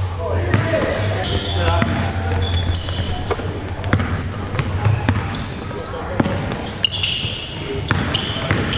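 A basketball bouncing on a hardwood gym floor, with many short, high sneaker squeaks, echoing in a large gym.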